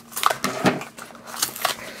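Small plastic toy blind basket being handled and opened by hand: a few sharp crackles and clicks of plastic packaging, in two short clusters.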